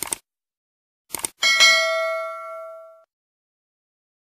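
Sound effects for a subscribe-button animation: a short click, then a few quick clicks about a second in. These are followed by a bell-like ding that rings and fades out over about a second and a half.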